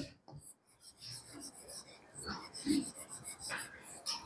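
Faint, irregular rubbing and tapping of a stylus drawing zigzag lines on a touchscreen smart board.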